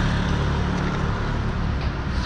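A steady, low engine drone under a constant wash of street noise.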